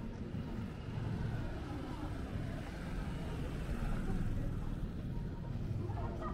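City street ambience: a steady low rumble of motor traffic, with faint voices of passers-by.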